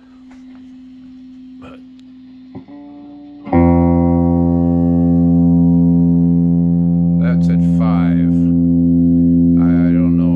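Electric guitar played through a freshly re-capped 1967 Fender Bandmaster AB763 tube amp head: a quiet held note, then about three and a half seconds in a loud note rings out and sustains steadily without dying away.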